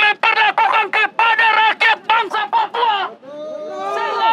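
A man shouting rapidly through a handheld megaphone, his voice loud, high-pitched and harsh. About three seconds in the shouting breaks off and several quieter voices overlap.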